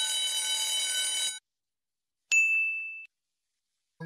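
Countdown-timer sound effect at zero: a held alarm tone for about a second and a half that cuts off sharply, then, about a second later, a single bell ding that rings out briefly.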